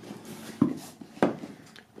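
Cardboard box being turned over in the hands, with two short knocks about half a second and just over a second in, from the box and its loose contents shifting.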